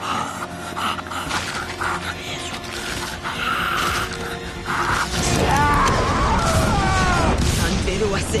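A man screaming and groaning in agony over dramatic background music. From about five seconds in the music swells louder and a long wavering cry rises and falls in pitch.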